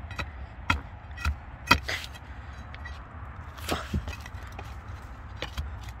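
Steel shovel blade chopping into root-filled soil around a buried iron piece: several sharp, irregularly spaced strikes, the loudest a little under two seconds in.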